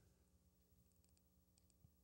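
Near silence: faint room hum with a few very faint, short, high-pitched ticks.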